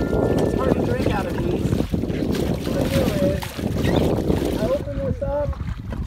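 Wind rumbling on the microphone over open water, with short snatches of a voice.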